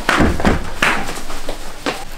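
A door being pulled shut with a thud in the first half-second, followed by a few short, sharp noises.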